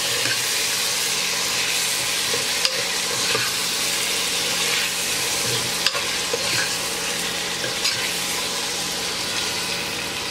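Prawns sizzling in hot oil with onion-tomato masala, stirred with a steel ladle. A steady frying hiss runs throughout, with the ladle scraping and clicking against the pot now and then.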